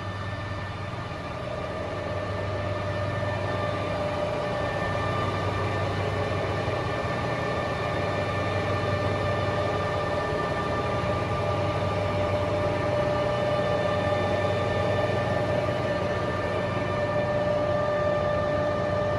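Stan Canada ZM50 engine lathe running with its chuck spinning: a steady mechanical hum under an even whine from the drive.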